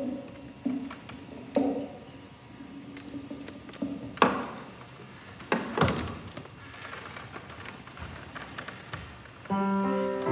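A handful of scattered knocks and thumps. Then, about half a second before the end, an upright piano begins playing held chords.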